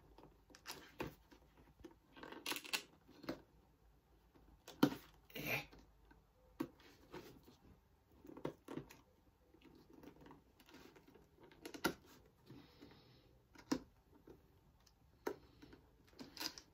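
Faint, scattered handling sounds of a cardboard action-figure box being opened by hand: short rustles, scrapes and clicks, with a handful of sharper pulls or tears.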